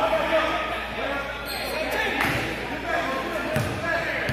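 A basketball bouncing on an indoor gym floor, with a few thumps of the ball, while people's voices call out across the hall, echoing.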